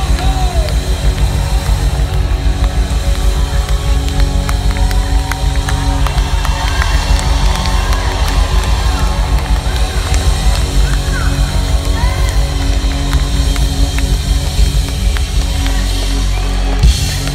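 Live band playing loudly through a PA, with electric guitars, bass guitar, keyboards and a drum kit keeping a steady beat, heard from among the audience.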